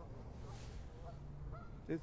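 Faint, distant honking of Canada geese, a few short calls over a low steady background.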